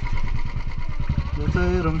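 Motorcycle engine running with a steady, rapid low pulse of firing strokes. A person's voice comes in over it near the end.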